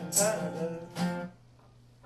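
Acoustic guitar strumming the closing chords of a live song. The last chord stops just past halfway through, leaving quiet room tone.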